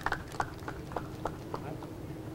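Footsteps of hard-soled shoes clicking on a hard stage floor as people walk away, about three steps a second, growing fainter toward the end.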